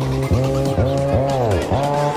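Melbourne bounce electronic dance music playing back: a steady bass under synth notes that bend up and down in pitch in quick arches, with one long downward swoop a little after a second in.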